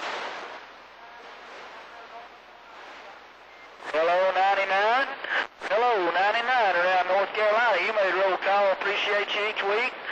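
CB radio receiver on AM: about four seconds of open-channel static hiss, then a sharp key-up click and a strong station coming in with a loud, distorted voice that briefly drops out about halfway through.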